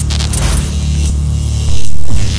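Glitch-style logo intro sound design: a deep, steady humming drone with crackles of static in the first half-second, then a sudden loud surge near the end.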